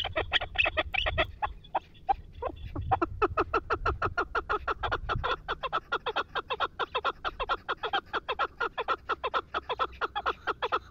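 Chukar partridges calling: a fast, unbroken run of short 'chuk' notes, about six a second, uneven and overlapping at first and settling into an even rhythm after about three seconds. A low rumble lies under the first half.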